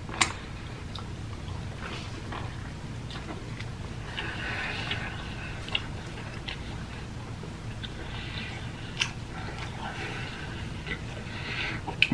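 Wet chewing and mouth sounds of a mouthful of spicy fried chicken sandwich with ranch dressing, with a few sharp clicks and stretches of louder squelchy chewing.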